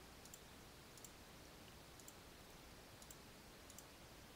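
Near silence with several faint computer mouse clicks, scattered and irregular, as a layer is switched off and on.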